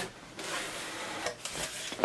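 Cardboard shipping box being worked open: rough rubbing and scraping of cardboard flaps as the lid is lifted.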